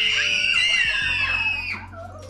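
A class of young children screaming with excitement, many high voices at once, breaking off near the end.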